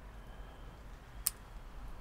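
A single short, sharp snip of scissors about a second in, as the blades close on a desert rose leaf stem. Otherwise only faint room tone.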